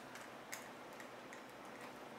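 Light clicks and taps of a cable plug being pushed into the rear I/O ports of a PC case, about half a dozen small clicks, the loudest about half a second in.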